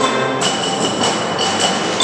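Concert band playing loudly: full sustained chords punctuated by rapid percussion accents about four or five a second, with a new high held note entering about half a second in.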